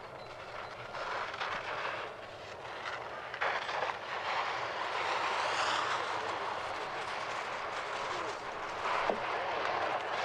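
Sit-ski's mono-ski edge carving and scraping across hard-packed snow through giant slalom turns, a hiss that rises and falls in loudness from turn to turn.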